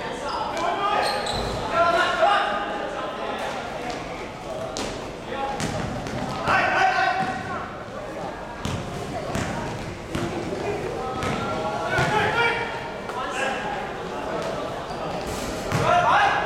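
A basketball bouncing on an indoor court floor during a game, in scattered sharp thumps, mixed with players' and spectators' shouting voices that echo in a large sports hall.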